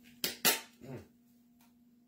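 Plastic mandoline slicer's part snapping into place: two sharp clicks about a quarter second apart, the second louder, followed by a short "mm" from a woman.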